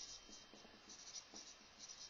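Dry-erase marker writing on a whiteboard: a run of short, faint, scratchy strokes as letters are written out.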